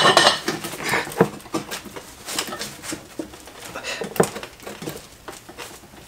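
Metal tools clicking and clanking on a transfer case's front output yoke as a breaker bar, extended with a steel pipe, breaks the yoke nut loose. The knocks are quick and dense in the first second, then come as sparse single clicks.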